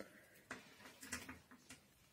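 Faint, near-silent bearded dragon chewing a cockroach: a few soft crunching clicks about half a second in, a small cluster around the one-second mark and one more near the end.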